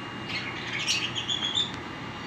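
Caged lovebirds chirping: a cluster of high, quick chirps lasting about a second and a half, ending in a short, slightly rising whistled note.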